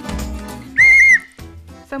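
One short, shrill blast on a handheld whistle, blown by a contestant to buzz in with an answer, about a second in. It cuts through background music.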